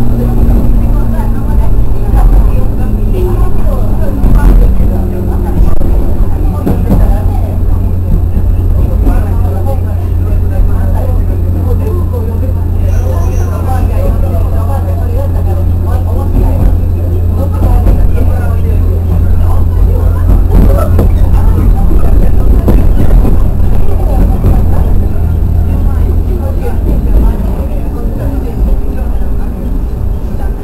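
JR West 103 series electric train heard from inside the cab: a steady low motor hum with wheel and rail rumble. The hum eases over the last several seconds as the train comes into a station.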